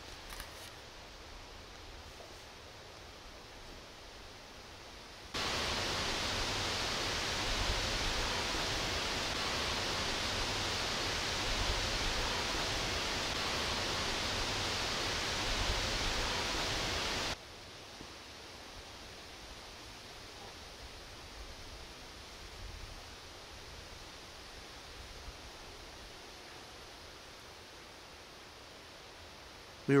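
Wind hissing through the forest trees, a steady noise with no distinct call or knock standing out. For about twelve seconds in the middle, starting and stopping abruptly, a replayed stretch with the volume turned up makes the wind hiss much louder.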